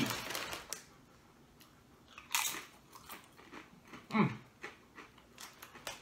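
A few scattered crunches of a pumpkin corn chip being bitten and chewed, with the chip bag crackling between them.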